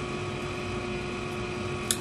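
Electric fan running steadily, a whooshing haze with a faint steady hum, and one brief click just before the end.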